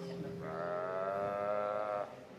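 A single held melodic note, rich in overtones, comes in about half a second in, holds steady and stops abruptly at the end, over a fainter steady lower tone.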